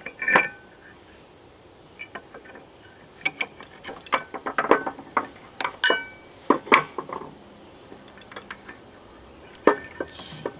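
Scattered clicks, knocks and clinks of a small hand tool working on an opened air-conditioner fan motor housing, busiest in the middle, with one sharp ringing metallic clink about six seconds in.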